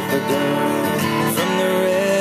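Acoustic guitar strummed in an instrumental passage, the chords changing a few times.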